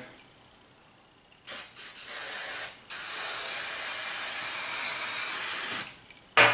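Aerosol hairspray can spraying onto hair in two bursts: a short spray about a second and a half in, then, after a brief break, a longer steady spray of about three seconds.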